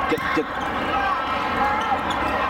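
Indoor volleyball play: two quick sharp sounds about a quarter of a second apart just after the start, a hit on the ball and sneakers squeaking on the court, over a steady hubbub of many voices in a large hall.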